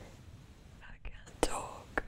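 A woman's soft, breathy whispered voice, faint, with a couple of sharp mouth clicks in the second half.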